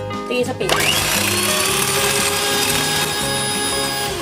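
Electric hand mixer starting up under a second in, its pitch rising quickly, then whirring steadily as its beaters whip egg whites in a glass bowl.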